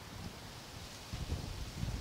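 Quiet wind noise on the microphone with a few faint, short low bumps in the second half.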